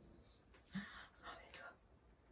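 A woman whispering faintly for about a second, under her breath.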